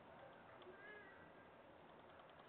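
Near silence: room tone, with a faint, brief high arching tone about a second in.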